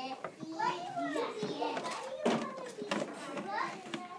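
Indistinct chatter of young children talking and playing, with a couple of light knocks around the middle.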